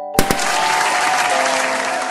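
Intro jingle of bell-like mallet-percussion notes; about a fifth of a second in, two sharp pops set off a burst of applause that fades over the next couple of seconds while the tune plays on.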